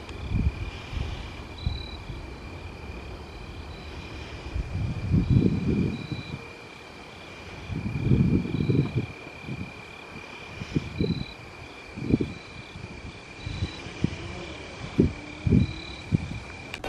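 Night insects trilling, with a steady high trill and a shorter, higher chirp repeating over it, while wind buffets the microphone in low gusts, with a few sharp thumps near the end.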